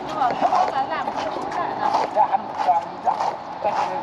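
Indistinct chatter of other people talking nearby, with scattered footsteps tapping on a glass walkway floor.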